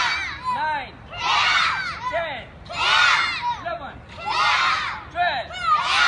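A group of children shouting together in unison, one loud shout about every one and a half seconds, in time with taekwondo punches drilled on a count.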